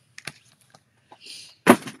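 Plastic stamp-set packages being handled: a few faint clicks and a soft rustle, then one sharp knock near the end as a clear plastic stamp-set case is set down on the wooden tabletop.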